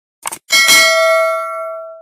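A short click sound effect, then a bell ding about half a second in that rings and fades over a second and a half: the sound of a subscribe-button animation.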